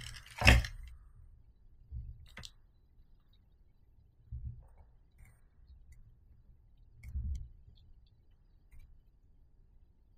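Handling sounds at a soldering bench: a sharp click about half a second in as the metal helping-hands clamp is moved, then a few soft knocks and a light click as tools and wire are set down on the silicone mat.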